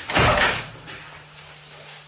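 A single loud, short rush of noise with a low thump near the start, lasting about half a second and fading out, followed by a faint steady hum.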